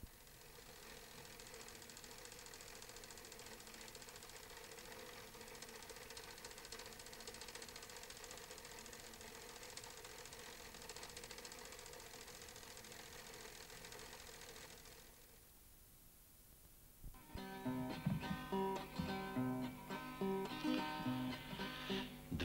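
Faint steady hiss with a low hum, then about seventeen seconds in a guitar starts playing, the introduction to a song.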